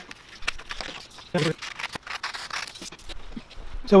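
Scissors cutting through a sheet of sublimation transfer paper: a run of short, irregular snips with paper rustling.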